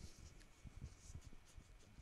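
Near silence: faint room tone with scattered soft low thumps and a few light clicks.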